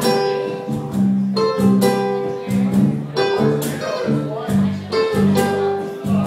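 Live acoustic band playing an instrumental passage: ukulele strumming chords over a U-bass line and a cajon beat, with sharp rhythmic strums.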